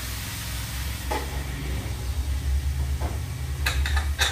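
Chopped vegetables frying in a steel kadai, with a few light clicks of stirring, about a second in, three seconds in and just before the end, over a steady low hum.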